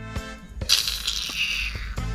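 A Jamaican 'kiss teeth' (steups): a sucking hiss drawn through the teeth and pursed lips, starting a little under a second in and lasting about a second, over steady background music.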